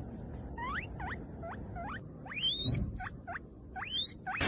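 A guinea pig wheeking: a run of short, high squeaks about three a second, with a longer, louder rising wheek about halfway through and another near the end. It is the guinea pig's begging call for food.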